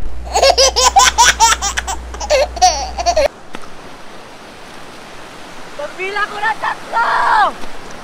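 Rapid, high-pitched laughter that cuts off abruptly about three seconds in. The rest is the steady rush of surf and wind, with a couple of short shouts near the end.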